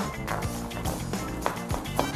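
Background music, with the irregular taps of a chef's knife mincing garlic on a plastic cutting board.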